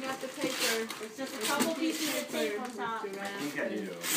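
Several people talking quietly and indistinctly in a small room, with tissue paper rustling as a gift box is unpacked.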